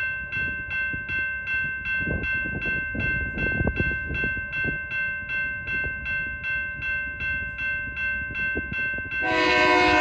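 Railroad crossing bell ringing at an even beat of about three strokes a second, over the low rumble of an approaching freight train. About nine seconds in, the lead locomotive's air horn starts sounding a loud chord.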